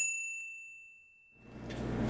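A single bright notification-bell 'ding' sound effect as the subscribe bell icon is clicked, striking sharply and ringing out, fading away over about a second and a half.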